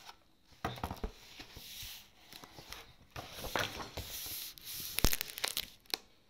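A paper picture book handled close to the microphone as it is put down: irregular rustling of its pages and cover with scattered clicks and knocks, the loudest a sharp knock about five seconds in.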